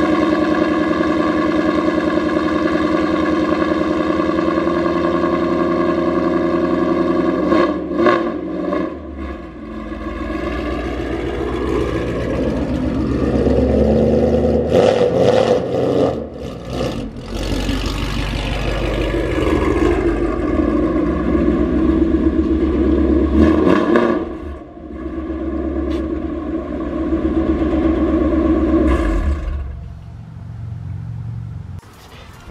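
Ford Mustang GT's 5.0-litre V8 idling, then pulling away and driving off and back, with the revs rising and dropping several times, before settling back to a steady idle near the end.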